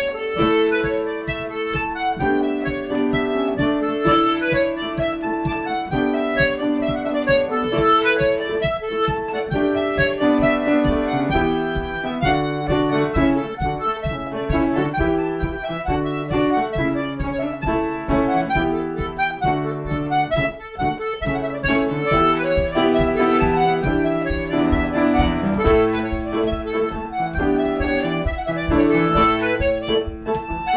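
Diatonic button accordion and grand piano playing an Irish-style polka, the accordion carrying the melody over the piano's rhythmic accompaniment.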